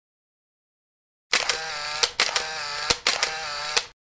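A small mechanism whirring in three short runs of under a second each, a slightly wavering whine broken by sharp clicks between the runs. It starts about a second in.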